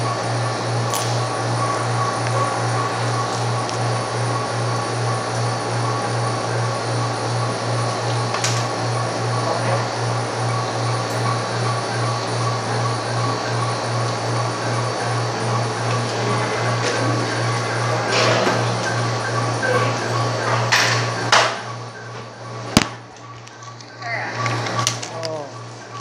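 Background music with a steady, even beat. Near the end a few sharp clicks and knocks come close to the microphone, and the overall sound drops.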